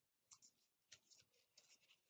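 Very faint rustling and light scratching of paper strips being curled between the fingers: a soft brush about a third of a second in, another around a second in, and a few more near the end.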